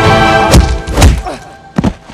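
Film score: a held musical chord breaks off into two heavy, deep percussive hits about half a second apart, then a sharp short crack near the end.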